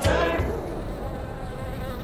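A bee buzzing steadily while it works flowers.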